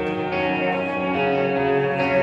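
A rock band playing live: electric guitars ring out held chords, changing chord just after the start, with effects and echo on the sound.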